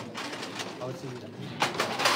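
Indistinct background chatter of several people, with a few sharp clinks of steel dishes and serving lids near the end.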